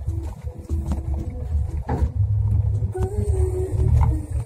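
Vehicle engine and road noise heard from inside the cabin while driving a rough dirt road: a deep, uneven rumble, with a sharp knock about two seconds in.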